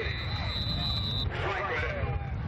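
Referee's whistle blown in one long, steady, high note that stops about a second in, signalling the play dead after the tackle.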